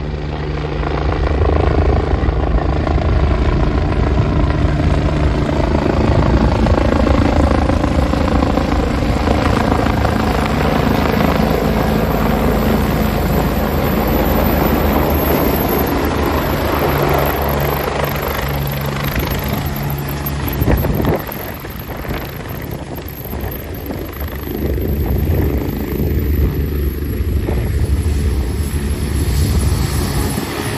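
AgustaWestland AW109 twin-engine helicopter coming in to land and settling onto the grass: loud, steady rotor and turbine noise, its pitch sliding down over the first half as it approaches. The sound dips briefly about two-thirds of the way through, then grows loud again with the rotors still turning on the ground.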